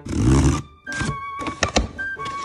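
Cardboard shipping box being handled and opened: a dull thud in the first half-second, then a few sharp cardboard clicks as the flaps are pulled open, over soft music with held tones.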